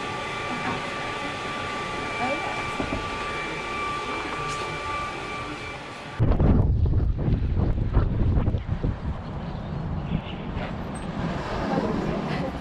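Steady whine of workshop machinery, two held tones over a hiss. About six seconds in it cuts to a louder, deep rumble with irregular knocks: footsteps and handling noise on a walking camera's microphone.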